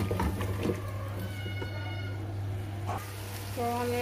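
A spatula stirring and scraping food in an aluminium pot, with a few scrapes in the first second. About a second in comes a short, high, steady call lasting about a second, and a voice sounds near the end.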